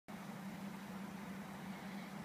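Off-road vehicle's engine idling: a faint, steady low hum.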